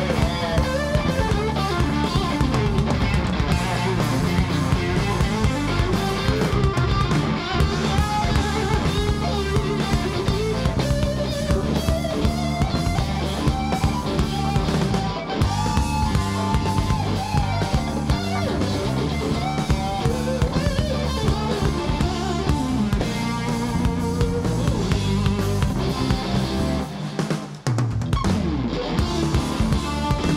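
A live rock band, with a Stratocaster-style electric guitar playing a solo of bending lead lines over drums and bass. The drums and bass break off briefly near the end.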